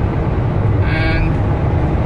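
Steady low drone of road and engine noise inside a car cruising on a motorway at about 70 mph. A short vocal sound comes about a second in.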